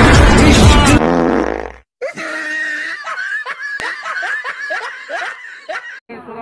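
Loud music cuts off about two seconds in. After a brief gap, a person laughs in a quick run of short ha-sounds, each falling in pitch.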